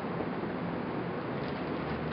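Steady low hiss of background room noise, with no distinct sounds.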